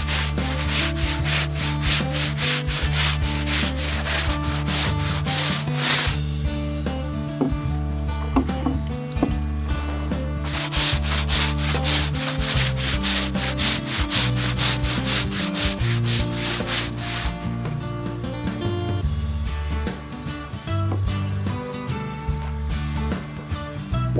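Long-handled scrub brush scrubbing canvas tent fabric laid on the ground, in quick back-and-forth strokes. Two strong bouts of scrubbing, the first for about six seconds and the second from about ten to seventeen seconds, with lighter brushing after that.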